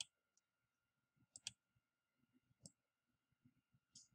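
Faint, sharp clicks of a computer mouse over near silence: one at the start, a quick double click about a second and a half in, one more past the middle and one at the end.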